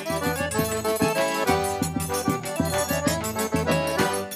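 Live forró band playing an instrumental passage: accordions carrying the melody in held, chordal notes over a steady beat on the zabumba bass drum, with a triangle ticking on top.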